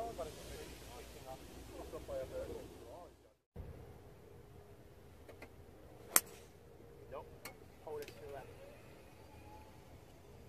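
A golf club strikes the ball off the fairway once, a single sharp crack about six seconds in, and this is the loudest sound. Faint voices are heard before it, and a few lighter clicks and murmurs follow.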